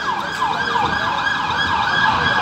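An emergency-vehicle siren sounding a fast yelp, its pitch rising and falling about three times a second.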